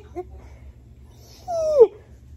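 A dog gives one short whine about one and a half seconds in, falling in pitch. A brief tail of a woman's laughter sounds at the very start.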